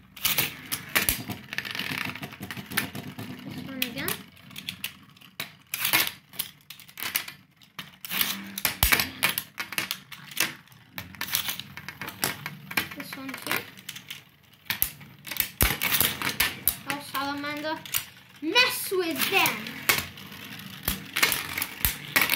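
Beyblade spinning tops clattering against one another and the plastic tray as they battle, an irregular run of sharp clicks and knocks.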